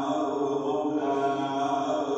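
A man's voice chanting in long, held melodic notes, in the manner of Quran recitation.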